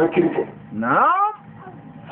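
A man's voice preaching through a microphone: a few quick words, then about a second in one drawn-out call that rises and falls in pitch.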